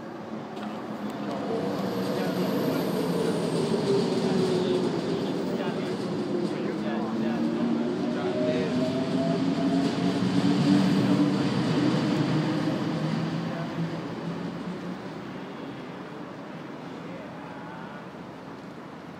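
A SkyTrain rapid-transit train passing at the station: a humming rumble that builds over the first couple of seconds, holds for about twelve seconds, then fades away near the end.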